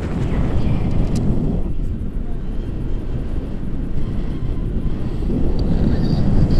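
Airflow from a tandem paraglider flight buffeting the camera microphone: a steady, dense low wind rumble.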